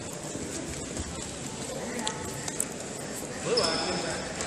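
Echoing sports-hall ambience at a wrestling bout: indistinct voices in the background and scattered soft thuds of wrestlers' feet on the mat, with a brief louder squeak near the end.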